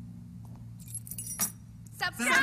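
Light metallic jingling and clinking about a second in, ending in a sharp click, over a faint low hum.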